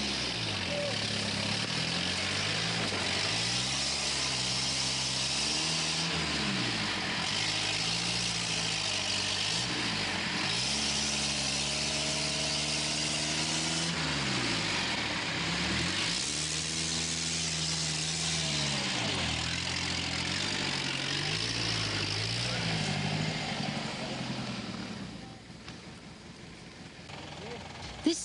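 A heavily loaded truck's engine revving hard, its pitch rising and falling again and again as it struggles to get across a muddy, rutted stretch of dirt road. The engine sound drops away near the end.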